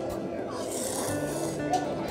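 A person slurping noodles from a bowl: a hissing slurp lasting about a second in the middle, over background music with plucked guitar.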